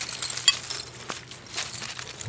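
Hands scraping and pulling at soil, roots and dead leaves in a dig hole, with crackly crunching throughout. A glass bottle gives one short ringing clink about half a second in as it is worked loose from the dirt.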